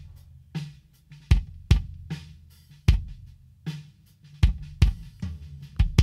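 Kick-drum track of an acoustic drum-kit recording played back with light mix processing (EQ, saturation and compression): about ten low thumping hits in an uneven groove, each with a bright click on the attack.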